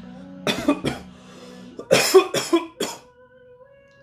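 A man coughing hard after a hit of hemp smoke from a pipe: three coughs about half a second in, then another bout of three or four coughs around two seconds in.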